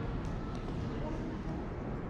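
Indoor gallery ambience: a steady low rumble with faint, distant voices of other visitors.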